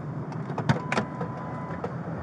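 Steady low hum inside an idling Ford patrol car, with a few sharp clicks about two-thirds of a second and a second in, and a faint thin steady tone in the second half.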